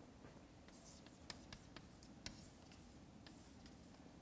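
Faint chalk on a blackboard: a series of short, sharp taps and ticks as a curved arrow and letters are drawn, over quiet room tone.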